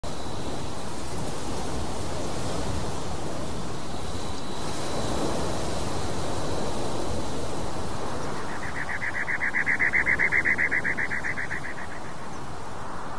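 Steady rushing outdoor noise. About two-thirds of the way in, an animal's rapid, even trill starts up and becomes the loudest sound for the last few seconds.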